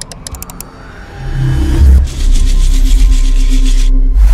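Intro sting of music and sound effects for an animated brick logo: a quick run of sharp clicks, a rising sweep, then a loud, deep bass tone with a hissing wash on top.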